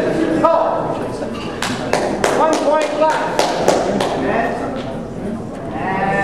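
Two push-hands competitors grappling, giving a quick run of sharp slaps and thuds as hands and bodies strike and shove, bunched between about one and a half and four seconds in. Voices talk in the background.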